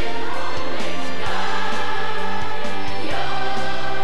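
Live band music: a Highland bagpipe playing over steady drones with electric guitars and drums, the melody moving to new notes about a second in and again near the end. The sound is dulled by a VHS-tape transfer.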